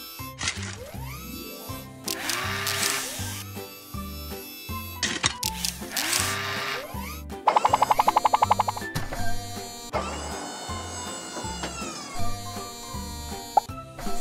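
Cartoon background music with a regular, bouncy bass line, overlaid with cartoon sound effects: two swishes, a fast rattle a little past halfway, and a set of tones that slide down together later on.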